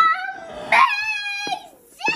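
A dog whining in long, drawn-out, high-pitched cries. One cry is held for about a second and then slides down in pitch, and another begins near the end.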